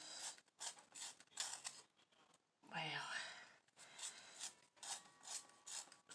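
Eyebrow pencil being turned in a small handheld sharpener: faint, short rasping scrapes, about two a second, with a pause about halfway through.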